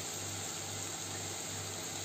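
Steady hiss of cooking on a gas stove: lit burners under a pot of vegetables and a lidded pot of noodles, with a faint low hum underneath.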